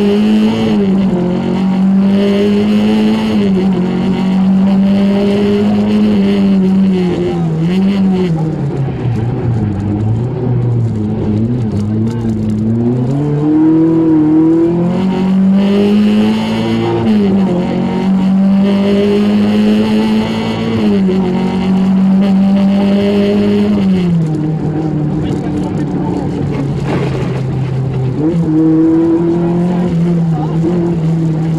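Lancia Beta Montecarlo rally car's four-cylinder engine at speed, heard from inside the cabin. It holds at high revs, drops away about nine seconds in as the car slows, revs back up, and eases off again near the end.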